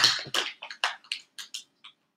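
Quick rubbing strokes of a scraper over vinyl transfer tape on a plastic box, burnishing the lettering down, about four strokes a second and fading out near the end.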